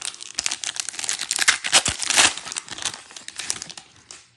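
Foil trading-card pack wrapper being crinkled and torn open by hand: a dense run of crackles, loudest around the middle.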